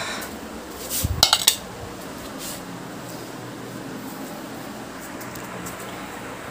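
A steel plate clinking and knocking a few times in quick succession about a second in, then only a low steady background hiss.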